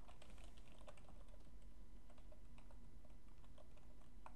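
Faint typing on a computer keyboard: irregular, quick keystrokes.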